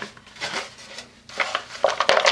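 Hands handling craft materials on a tabletop while fetching a glue stick: scattered light clicks, taps and rubbing, busier in the second half.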